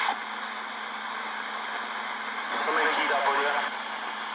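CB radio receiver putting out steady band static, with a faint, weak voice coming through the hiss from about two and a half seconds in.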